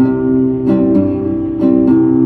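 Acoustic guitar accompanying a Mexican corrido, strumming four chords in the pause between sung lines.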